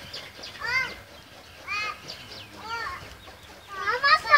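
Chicken clucking: short, similar calls about once a second, with louder, overlapping calls near the end.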